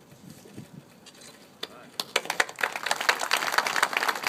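A brief hush with faint voices, then a crowd starts clapping about halfway through, the applause quickly building and growing louder.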